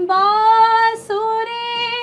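A woman singing unaccompanied in light classical Hindustani style, a dadra. She holds two long notes with slight bends in pitch and takes a short break between them about a second in.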